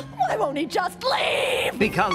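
A cartoon woman's voice making wordless whimpering, yelping noises, broken by a hissing noise about a second in.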